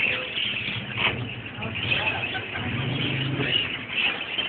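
Caged birds calling, with many short high chirps, over a low steady rumble that swells twice.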